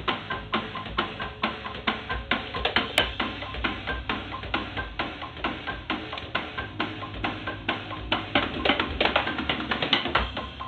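Roland electronic drum kit being played: sticks striking the mesh snare pad and rubber pads in a fast, steady beat.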